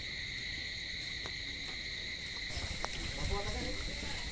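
Steady high chirring of crickets, with a couple of faint clicks and distant voices near the end.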